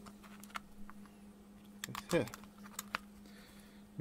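Small sharp clicks and taps as a TO-220 voltage regulator's metal legs are pushed through a printed circuit board and the board is handled, several scattered clicks over a few seconds, over a faint steady low hum.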